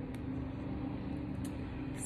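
Heart chakra Tibetan singing bowl track sounding as a steady drone, several tones held evenly over a low hum, with two faint clicks.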